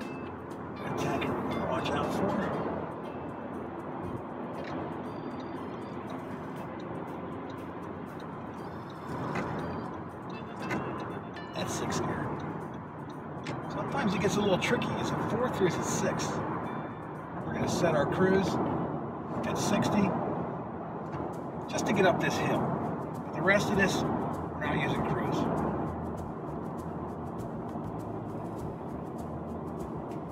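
Steady road and engine noise inside the cabin of a 2017 Honda Civic Hatchback Sport (turbocharged, six-speed manual) cruising at highway speed. Background music and short bursts of a voice run over it, more often in the second half.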